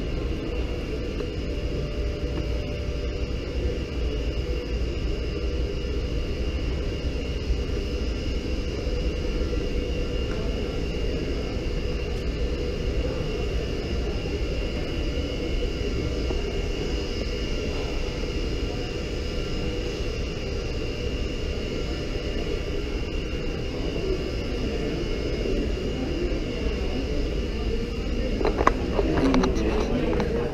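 A steady, unbroken droning rumble with a faint high-pitched whine held over it. Near the end a few voices and some knocks break in briefly.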